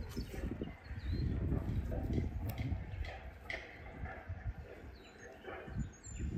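Soft rustling of twigs and roots, with a few light knocks, as a bare-root tree is lifted and set down into a freshly dug hole in soil.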